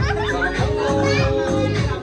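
Background music with a steady beat, with children's voices over it.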